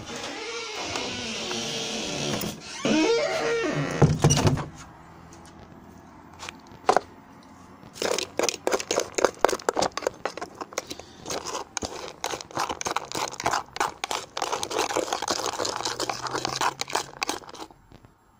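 Metal fork scraping and clicking against a plastic cat bowl, raking out leftover dry cat food in quick, irregular strokes through the second half. Earlier, a few seconds of steady rustling hiss, then a couple of loud knocks.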